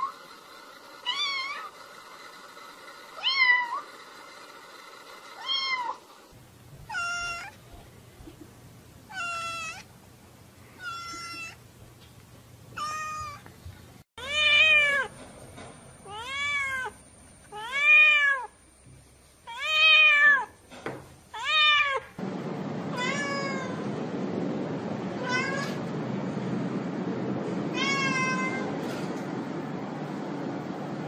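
Cats meowing over and over, roughly one meow a second, many calls rising then falling in pitch, with the loudest run of meows about halfway through. The background changes abruptly a few times, and a steady rushing noise sits under the meows near the end.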